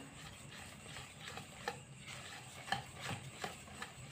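Wire whisk stirring thick brownie batter in a plastic bowl: faint, irregular ticks and scrapes of the whisk against the bowl.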